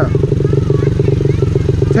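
Honda 50 mini bike's 49cc four-stroke single-cylinder engine idling steadily, its rapid firing pulses close to the microphone.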